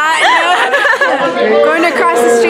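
Two women laughing and chattering.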